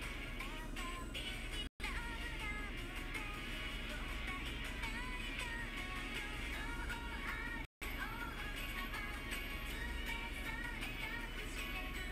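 A recorded pop song with a sung melody playing. The sound cuts out completely for a split second twice.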